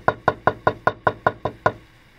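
Aluminium hair stacker tapped rapidly and evenly on a wooden tabletop, about five knocks a second, stopping near the end. The tapping drives the calf tail hairs down so their tips come out even.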